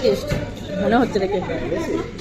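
People talking: voices and background chatter.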